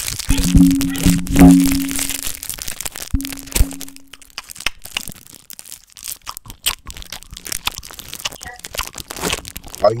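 Hard candy being chewed and crunched close to the microphone for ASMR, a dense run of sharp crackling clicks that is heaviest in the first few seconds. A steady low hum sounds twice under the crunching in the first four seconds.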